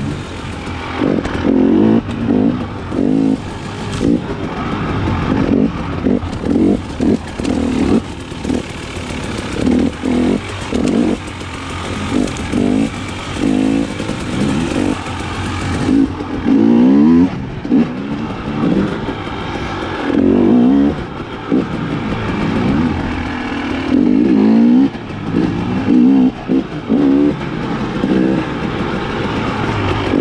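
2019 KTM 300 XC-W TPI's fuel-injected two-stroke single-cylinder engine being ridden hard, revving up and down in short bursts as the throttle is opened and closed, with several quick rising whines as it pulls.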